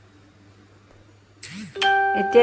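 Faint room tone, then about one and a half seconds in a sudden clang followed by a sustained ringing ding.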